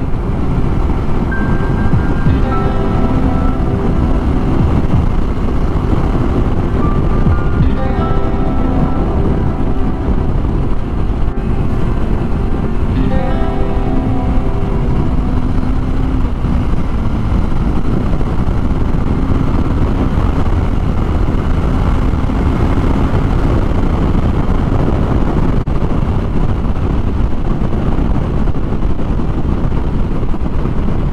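Kawasaki Ninja 250R's parallel-twin engine running steadily at cruising speed under heavy wind rush on the microphone, with music playing over it.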